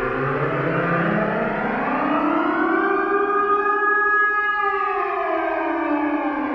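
Electronic drone rich in overtones, played through a loudspeaker from a patched synthesizer setup. It glides slowly up in pitch for the first three and a half seconds, holds briefly, then slides back down near the end, like a slow siren.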